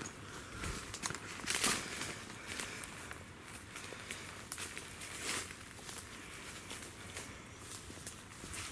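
Footsteps crunching through dry leaf litter and twigs on a forest floor, uneven steps about one a second.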